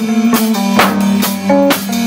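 Live math-rock played on electric bass guitar and drum kit: held bass notes under loud drum and cymbal hits about twice a second.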